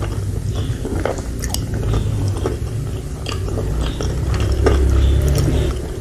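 Close-miked chewing of a mouthful of spicy soupy instant noodles and fried meatballs, with many small wet mouth clicks and smacks. It gets louder about two-thirds of the way through.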